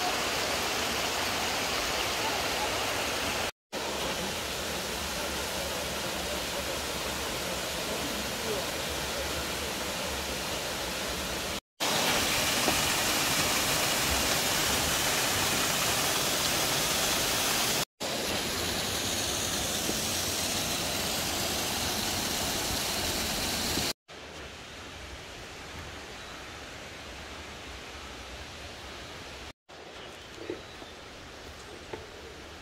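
Steady rushing of a mountain waterfall and stream, in several short stretches broken by brief silent gaps. From about 24 s the water is quieter and duller.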